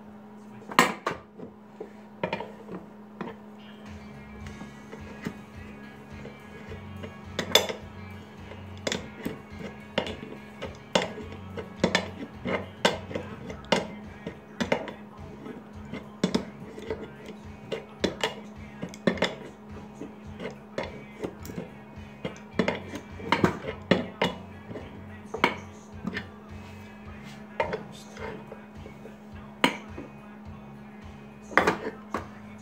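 Metal clinks and taps of a wrench on 3/8 hose compression fittings being tightened on a transfer case, coming irregularly throughout, at times a few a second. A steady low hum runs underneath.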